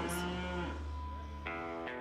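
Holstein dairy cow mooing: a long, low moo.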